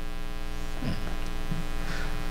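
Steady electrical mains hum in the microphone and sound system, a buzz made of many evenly spaced overtones, with a couple of faint small noises about a second in.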